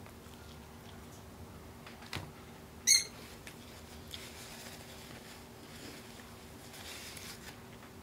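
Quiet sounds of eating chicken wings and wiping greasy fingers on a paper napkin, with a few soft clicks. A single short, high-pitched squeak about three seconds in is the loudest sound.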